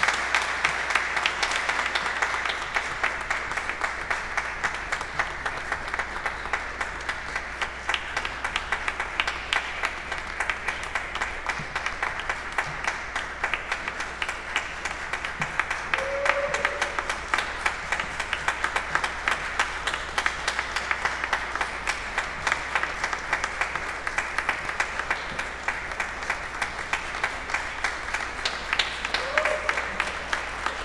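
Congregation applauding: a steady, dense mass of hand clapping throughout.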